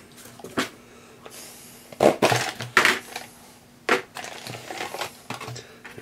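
Cardboard packaging being handled: box flaps scraping and crumpling, loudest in two bursts about two and three seconds in. A few sharp knocks come as small boxes are set down on the metal workbench.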